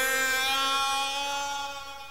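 A single held organ note, steady in pitch and rich in overtones, fading away gradually.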